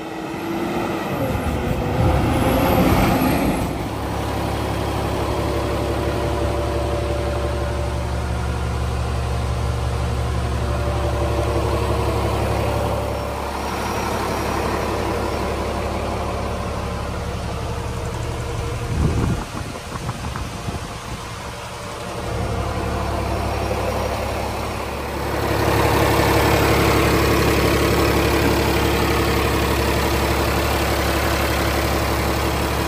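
Cummins ISL9 diesel engine of a front-load garbage truck: the truck drives up in the first few seconds, then the engine idles steadily. It is louder over the last few seconds, heard close to the open engine bay.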